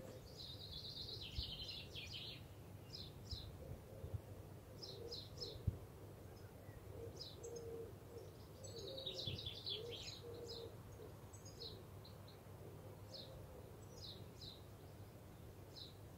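Faint songbirds chirping in the background: repeated short high chirps with two quick trills, one near the start and one just before ten seconds in. A couple of soft knocks, the sharpest about six seconds in.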